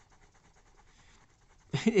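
Caran d'Ache Luminance coloured pencil scratching on paper in quick, hard-pressed back-and-forth strokes, layering light blue over a darker blue; faint. A voice starts speaking near the end.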